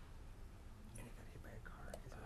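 Faint, low murmured talk and whispering among people in a meeting room, with no clear words.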